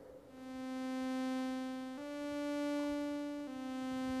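Analog synthesizer playing sustained notes with a slow attack and a long release, so each note swells in gradually and the notes carry on into one another. The pitch steps up a little about two seconds in and back down about a second and a half later.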